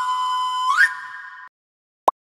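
Intro sting for a logo animation: a held electronic note that slides quickly upward about two-thirds of a second in, holds, and cuts off suddenly at about a second and a half. It is followed by a single short click.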